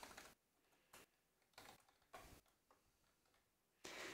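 Near silence, with a few faint computer-keyboard clicks about half a second apart as a reboot command is typed and entered.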